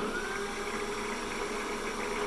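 PM-728VT milling machine spindle and motor running and speeding up as its speed knob is turned. A faint whine rises in pitch over the first half second, over a steady hum.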